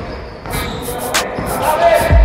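A basketball dribbled on a wooden gym floor: three sharp bounces about two-thirds of a second apart.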